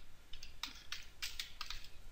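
Computer keyboard typing: a quick, irregular run of key clicks as a few characters are entered.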